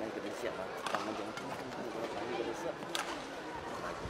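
A man talking courtside over the steady background noise of an indoor arena, with two sharp clicks, about one and three seconds in.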